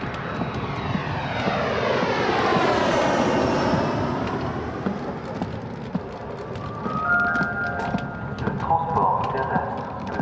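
A jet airliner passing overhead, swelling to its loudest two to four seconds in with a sweeping whoosh, then fading away. Near the end a few short steady tones sound among light clicking.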